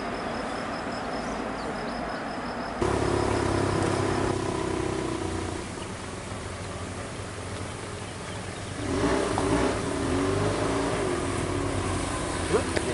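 Motorcycle engine running, coming in abruptly about three seconds in with a steady note and growing louder and more wavering from about nine seconds in. Before that, a quieter stretch of road noise with an insect chirping in a fast, even pulse.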